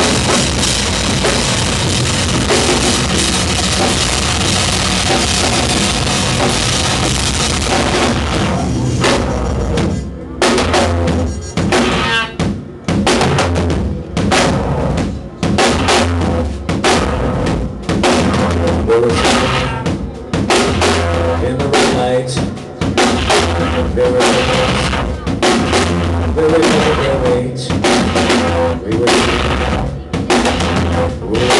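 Live avant-noise rock band playing loudly on drum kit and electric guitar. For the first third the music is a dense, unbroken wall of sound; from about ten seconds in it breaks into choppy, stop-start hits with short gaps between them.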